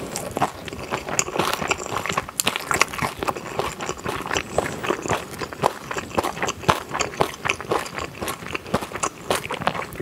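Close-miked chewing of a mouthful of kimchi and rice: a dense run of wet mouth clicks, smacks and small crunches.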